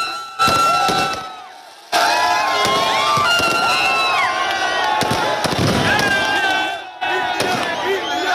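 A crowd of fans shouting and cheering in celebration, with firecrackers going off. A sudden bang just after the start fades out over a second or so. From about two seconds in the shouting becomes loud and continuous, breaking off briefly near seven seconds.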